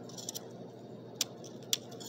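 A few sharp, light clicks of metal parts being handled: the cut-down pieces of a BB gun. Faint steady room noise lies underneath.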